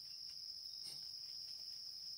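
Insects trilling steadily at a constant high pitch, faint, with no break.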